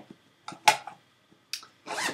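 A few short clicks and light rustles from a knitting project and its bag being handled, the sharpest click a little under a second in.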